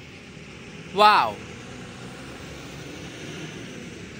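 A man's short exclamation of admiration, "wah", about a second in, over a steady low background noise of the open air.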